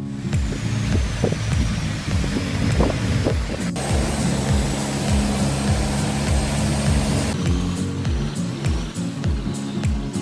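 Background music with a steady beat, over the noise of a motorboat running with water rushing past; the noise thins about seven seconds in.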